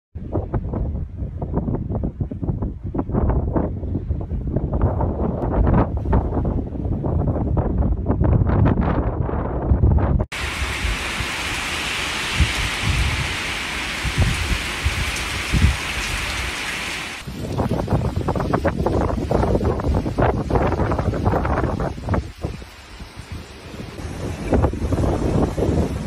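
Hurricane wind buffeting the microphone in heavy, rumbling gusts. About ten seconds in it cuts to a steady hiss of driving rain and wind, and after about seven more seconds to gusting wind on the microphone again.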